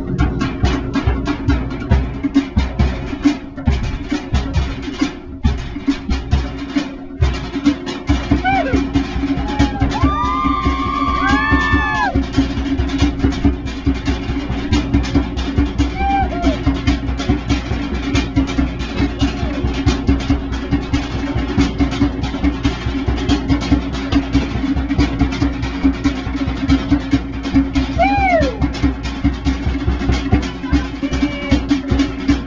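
Fast, steady drum-led music for a fire knife dance, with a few high whooping calls from voices about ten seconds in and again near the end.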